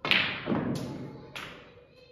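Snooker cue tip striking the cue ball, with the sharp clack of the cue ball hitting the black almost at once, then a lower thud about half a second in and two sharp clicks of balls hitting the cushions or the pocket as the black is potted.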